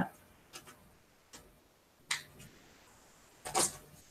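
A few faint, brief rustles and ticks of foundation paper being picked and torn away by hand from a small paper-pieced quilt block, the strongest about two seconds in and again near the end.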